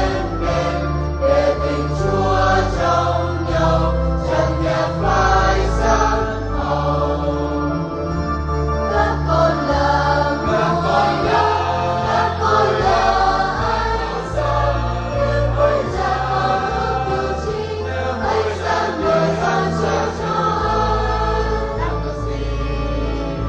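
A church choir singing a Vietnamese Catholic Mass hymn with instrumental accompaniment, over a sustained bass line that changes every second or two.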